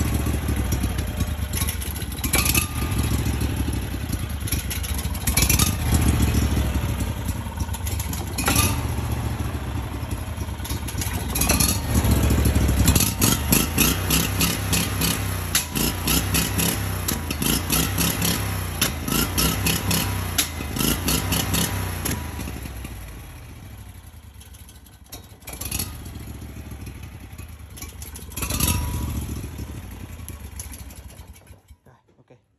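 Small air-cooled twin-cylinder engine running on a test bench, its revs rising and falling as the throttle is worked by hand, with sharp cracks every few seconds. About 23 s in it drops to a much quieter, lower running.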